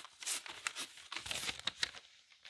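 Butcher paper crinkling inside a t-shirt as hands smooth the shirt flat, a run of irregular crinkles and rustles.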